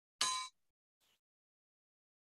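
A small bell struck once: a short bright ding that cuts off after about a third of a second, followed by a much fainter brief sound about a second in.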